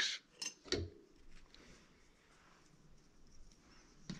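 Metal sculpting tools being picked up and handled: two light clicks within the first second, then faint room tone with small handling noises.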